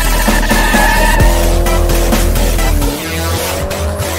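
Intro music with a steady beat, mixed with car sound effects: an engine revving up and down and tyres squealing. It gets somewhat quieter about three seconds in.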